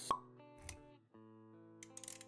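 Intro music with sound effects: a sharp pop just at the start, the loudest thing, then a soft low thump. The music drops out for a moment about a second in and comes back with held notes and light clicks.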